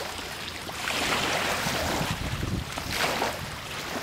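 Rushing noise that swells and fades in waves, with scattered light clicks.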